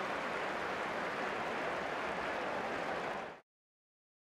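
Football stadium crowd noise, a steady even wash of many voices, which cuts off abruptly to silence about three and a half seconds in.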